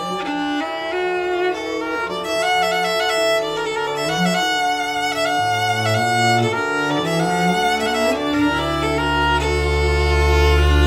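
Acoustic string trio playing jazz: a violin leads the melody over a bowed cello and a bowed double bass. About eight seconds in, a deep, sustained bowed double-bass note enters and becomes the loudest part.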